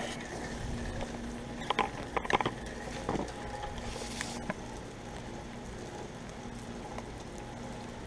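2004 Comfort Range two-ton heat pump outdoor unit in defrost, its compressor humming steadily with the fan stopped, over a faint hiss. A few light knocks come about two seconds in.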